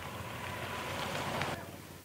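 Outdoor noise of slow-moving escort vehicles, motorcycles and a jeep, mixed with wind on the microphone. It builds and then drops away abruptly near the end.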